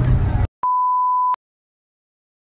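Car cabin road rumble cut off abruptly about half a second in, followed by a single steady high-pitched electronic beep, a pure tone lasting under a second. The beep then stops sharply into dead silence.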